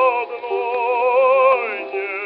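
Operatic bass voice singing a slow Russian folk song on an early gramophone recording: held notes with a wide vibrato, stepping to a new note and then sliding downward near the end. The sound is thin and narrow, with no deep bass and no top, as on an old acoustic recording.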